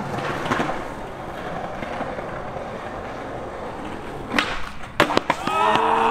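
Skateboard wheels rolling on concrete, then several sharp board clacks about four and five seconds in. Voices shout near the end.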